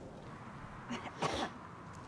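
A person coughs twice in quick succession, about a second in, the second cough louder.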